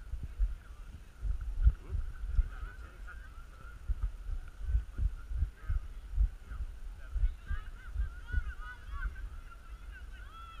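Wind buffeting the microphone in irregular gusts, with a continuous chatter of faint, distant high calls that grows busier near the end.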